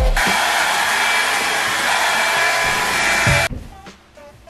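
Hair dryer blowing steadily, a dense rush of air with a faint whine, which cuts off suddenly near the end.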